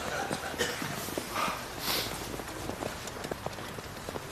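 Footsteps on snow, a quick irregular run of soft steps from people walking briskly, with a short breathy hiss about halfway through.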